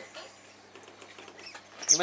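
Faint water sloshing and small splashes in a shallow inflatable paddling pool.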